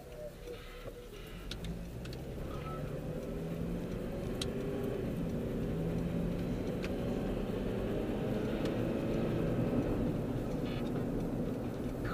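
Car engine and road noise heard from inside the cabin as the car pulls out and gathers speed. It grows louder over the first several seconds, then runs steadily. A few faint clicks sound in the first half.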